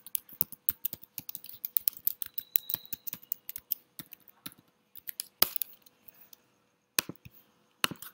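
Computer keyboard typing: a quick run of key clicks for about three and a half seconds, then two single, louder key or mouse clicks a second and a half apart.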